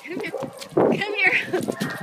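A dog barking and yipping, mixed with bits of a person's voice.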